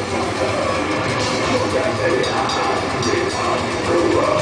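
Technical death metal band playing live: distorted electric guitars, bass and drums in a dense, steady wall of sound.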